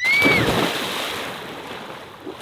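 Pond water splashing and churning. It comes in suddenly, loudest at first, and dies away over about two seconds, with a brief rising-and-falling cry at the very start.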